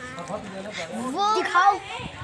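Young voices calling out and chattering, with a rising, drawn-out shout about a second in.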